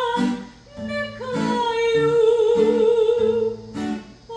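A woman singing a Serbian old-town song (starogradska) to acoustic guitar accompaniment, live. A little over a second in she holds one long note with vibrato over the plucked guitar chords.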